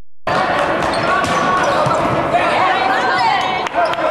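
Men's volleyball rally in a large echoing gym, cutting in suddenly just after the start: players shouting and calling, with a few sharp smacks of the ball being hit.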